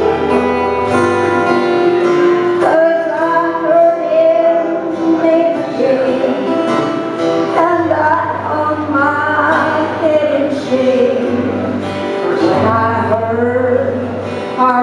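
Live country band playing an instrumental break: acoustic guitar strumming under a gliding, sustained melodic lead line, with long held bass notes.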